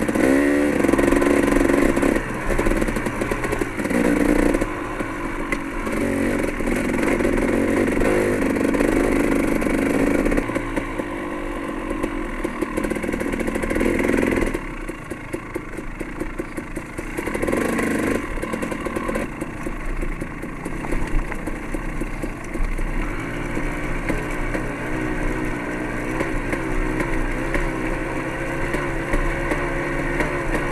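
Enduro dirt bike engine running under way on a rocky trail, rising and falling with the throttle. It drops back about halfway through, then builds again.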